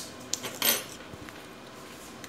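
Plastic clicks and a short scraping snap from an HP 245 G8 laptop's plastic bottom case as its edge is worked with a plastic card to free or seat the case clips. There are a few quick clicks about half a second in, then the loudest sound, a brief scrape-snap, then nothing more.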